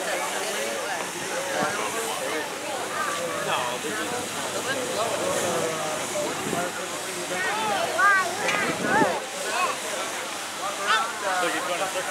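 A steady hiss of water spray from float-mounted fire-hose nozzles, under the chatter of several onlookers' voices.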